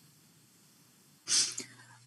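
Near silence, then a short, sharp burst of breath from the lecturer about a second and a quarter in, fading over half a second.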